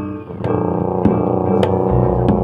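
Live Javanese gamelan music: ringing pitched metallophone notes with sharp struck accents keeping a steady beat, a little under two strikes a second.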